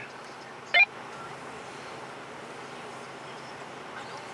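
Steady low hiss of quiet car-cabin ambience, broken once just under a second in by a short, sharp pitched blip.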